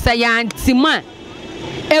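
A vehicle horn toots briefly in the first half-second, in street noise, followed by a short burst of a woman's voice.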